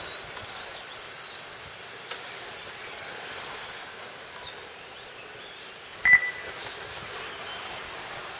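Electric radio-controlled touring cars racing on a tarmac track: a thin, high motor whine that rises and falls in pitch as they speed up and slow for corners, over a steady hiss. A short, sharp beep about six seconds in.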